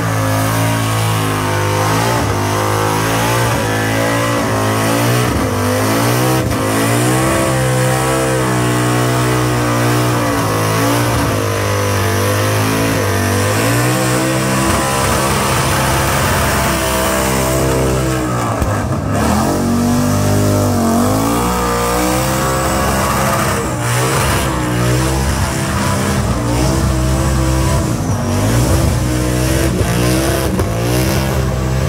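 A burnout car's engine held at high revs, the pitch wavering up and down as the throttle is worked, with the rear tyres spinning on the pad. The revs sag briefly about two-thirds of the way through and climb again.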